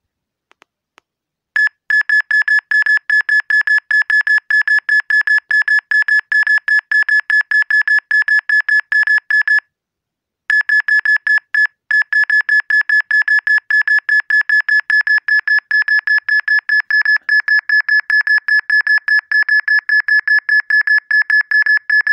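Smartphone radiation-meter app sounding its alarm: a fast run of short, high-pitched beeps, about four or five a second, all at one pitch. It starts about a second and a half in, breaks off briefly about halfway, and signals a reading pegged in the app's 'Extreme Radiation' zone.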